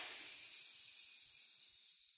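A hissing sound effect for the magic blue rock beginning to hiss: a high, airy hiss that slowly fades away.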